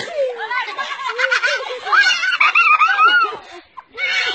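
People laughing hard: quick, high-pitched bursts of giggling and snickering with a few words mixed in. The laughter briefly drops away near the end.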